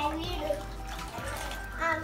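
Water sloshing and splashing in a plastic bucket as steel dishes are washed by hand.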